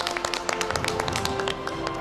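A small group of people clapping their hands in quick, uneven applause, over background music with long held tones.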